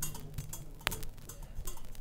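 Jazz drum kit played sparsely and lightly: a few sharp taps with gaps between them, in a quiet stretch of the live band's performance.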